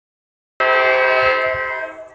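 Diesel locomotive air horn sounding a steady chord of several notes, from a Carolina & Piedmont GP38-2 leading a train. It starts abruptly about half a second in and fades away near the end.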